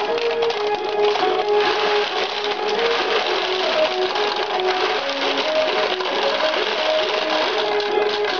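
Ukiyo-e pachinko machine playing its electronic music, a melody of short stepping notes, over a dense, continuous clatter of steel pachinko balls.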